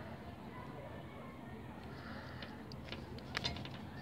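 Faint handling noise of yarn being sewn through crochet fabric with a wool needle, with a few small clicks about two and a half to three and a half seconds in.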